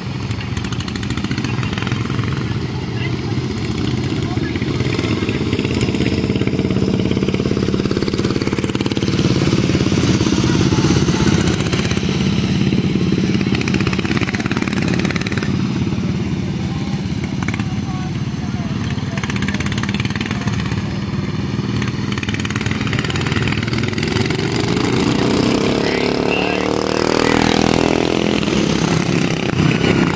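Several modified flathead kart engines racing around a dirt oval, a steady mix of engine notes that drifts up and down in pitch as the karts circle. Near the end, karts pass close by and their engine pitch sweeps up loudly.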